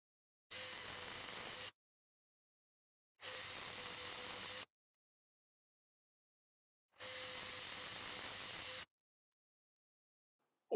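A cordless drill with a 4 to 5 mm brad point bit drilling holes through an olive-wood sphere, run in three short bursts of a steady motor whine, one for each hole.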